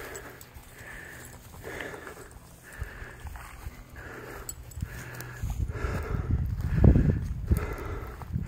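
Heavy, rhythmic breathing with footsteps through dry grass while climbing a slope. A strong low rumble on the microphone from about five and a half seconds in, loudest near seven seconds.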